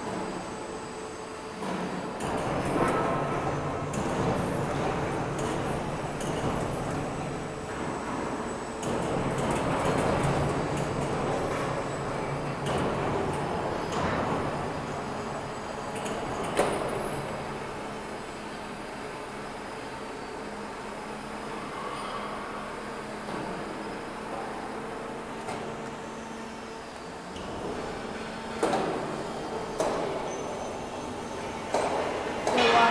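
Heavy-gauge roll forming machine running as it forms 6 mm steel into a U channel: a steady mechanical rumble and hum with metal-on-metal scraping and a few sharp clanks, louder in the first half and easing after about halfway.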